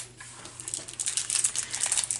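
Thin clear plastic bags crinkling and rustling as they are handled, with irregular small crackles that grow busier in the second half.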